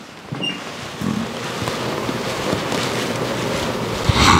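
A steady rushing, wind-like noise that swells in during the first second and then holds level.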